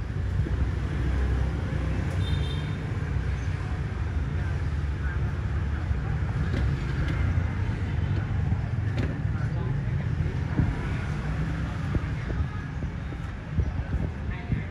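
Street traffic noise: a steady low rumble of passing vehicles, with a few short high-pitched tones about two seconds in.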